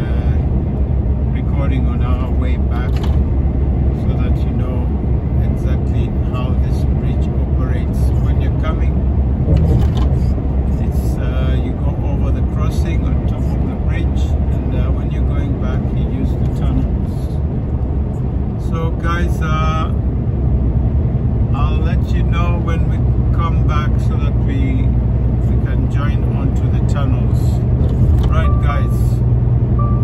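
Steady low drone of a lorry's engine and tyres inside the cab while cruising along a motorway, with faint talk now and then over it.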